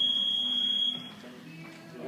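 Boxing gym round timer's electronic beep: one steady high tone that cuts off about a second in, signalling the end of the round.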